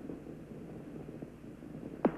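Faint, steady low rumble of Space Shuttle Challenger climbing on its three main engines and two solid rocket boosters, with a light hiss.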